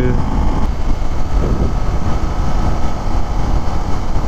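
Wind rushing over the helmet microphone of a Kawasaki Ninja 250 cruising at highway speed, with the bike's engine running steadily underneath.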